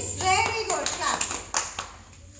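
Several young children clapping their hands in quick, uneven claps, with a child's voice at the start.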